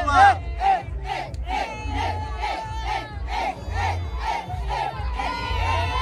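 A crowd of women ululating and cheering in quick repeated rising-and-falling calls, about three a second, over the bass beat of music. A long held high note joins near the end.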